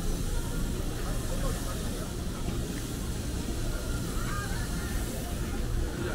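Busy pedestrian street ambience: a steady low rumble and general crowd noise. About four seconds in comes a short, wavering high-pitched sound.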